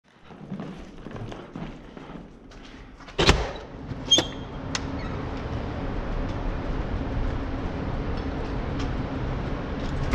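A metal exit door banging open, followed about a second later by a sharp metallic clack with a brief ring and a smaller click. After that, a steady hum of outdoor background noise.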